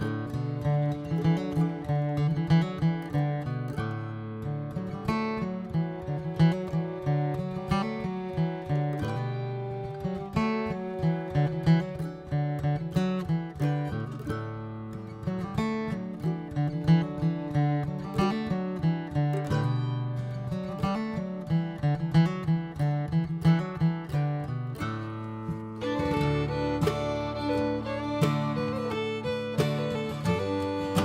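Background music of plucked acoustic guitar playing a steady rhythmic pattern, moving into a new section near the end.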